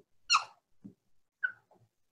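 A few short, faint squeaks of a marker on a whiteboard as a multiplication sign and a fraction bar are drawn, one about a third of a second in and another near one and a half seconds.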